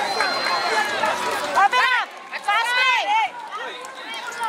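Voices shouting to the players in a youth football game: overlapping calls, then several loud, high-pitched shouts that rise and fall, about two seconds in and again about a second later.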